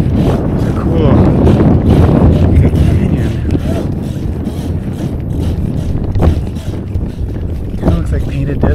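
Wind buffeting the camera microphone on a moving bicycle, a loud, steady low rumble that eases slightly in the second half.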